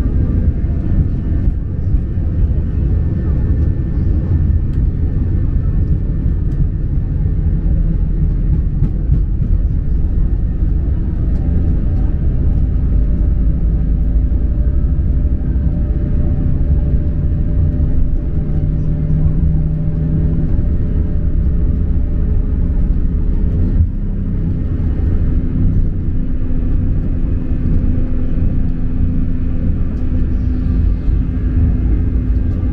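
Cabin noise of an Airbus A320-family airliner on its takeoff roll: the jet engines at takeoff thrust and the undercarriage rolling on the runway make a loud, steady, low rumble, heard from inside the cabin. The rumble eases briefly about three-quarters of the way through, as the aircraft nears lift-off.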